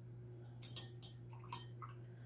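A paintbrush tapping and clinking against a glass water jar as it is rinsed: a handful of faint, light ticks spread over about a second, over a steady low hum.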